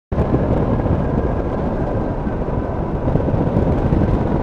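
Motorized hang glider (trike) in flight: the engine and pusher propeller running at a steady cruise under loud, rushing airflow noise, with a faint thin steady whine above it.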